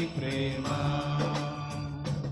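Live Telugu Christian worship song: male voices holding long notes over instrumental backing.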